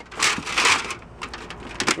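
Metal license plates scraping and clattering against one another as they are flipped through by hand: about half a second of scraping, then a few light clicks near the end.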